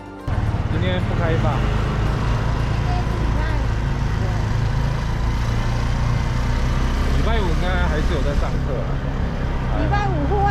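A motor vehicle running with a steady low rumble, with people's voices talking over it.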